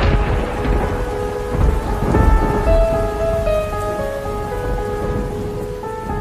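Rain and thunder ambience, with low rumbles of thunder at the start and again about two seconds in, layered under a soft melody of sustained notes.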